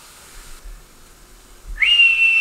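A single high whistled note near the end, sliding up and then held steady. Before it there is only faint background hiss.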